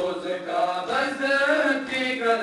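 Male voices chanting a noha, a Shia Muharram mourning lament, led over a microphone, with mourners beating their chests (matam) in the background. The chant resumes right at the start after a short pause.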